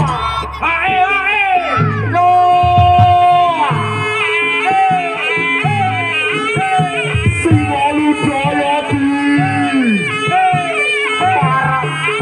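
Loud Javanese jaranan accompaniment music: a melody of held notes that slide down at their ends, over a steady held tone and regular drum strokes.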